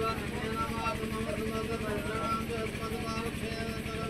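Low, indistinct voices over a steady engine-like hum that holds a constant pitch.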